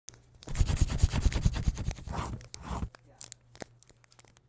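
Sound effect of a pencil scribbling fast on paper: a dense run of quick scratchy strokes starting about half a second in, thinning to a few scattered scratches after about three seconds.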